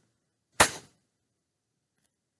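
A single sharp knock about half a second in, fading within a fraction of a second: handling noise from fingers working a doll's head and needle right at the microphone.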